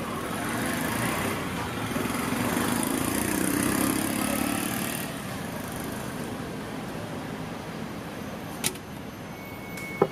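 Road traffic running steadily, with a vehicle passing and growing louder for a few seconds early on before easing back. There is one sharp click near the end.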